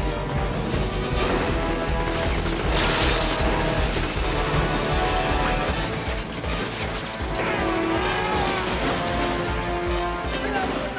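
Action-film soundtrack: music score mixed with crashing and smashing effects, with a loud crash about three seconds in.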